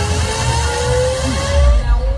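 Loud electronic dance music over a club sound system: a long synth tone rises slowly in pitch over a pounding bass line as a build-up. Near the end the high end cuts away and a heavy bass hit lands.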